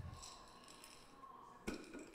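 Faint handling of a glass jar of dried bow-tie pasta as it is tipped and moved, with a soft bump at the start and a sharp click near the end.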